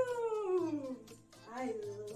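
A drawn-out, voice-like call that slides steadily down in pitch for about a second, then a shorter rise-and-fall call near the end, over children's background music.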